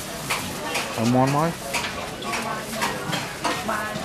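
Food-stall clatter: a run of sharp clinks and scrapes of plates, utensils and plastic bags, with a short voice rising in pitch about a second in, the loudest sound, and another brief voice near the end.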